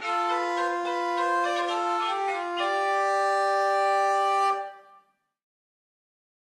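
Medieval portative organ playing slow, sustained notes in several voices, with a few note changes, ending on a held chord that stops about four and a half seconds in and rings out briefly.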